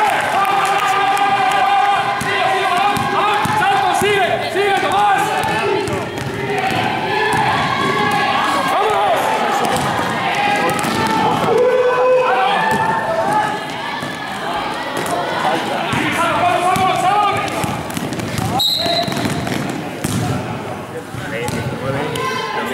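A basketball bouncing and being dribbled on a sports-hall floor during play, among the constant shouting of players and spectators. A short, high whistle blast sounds near the end, and play stops after it.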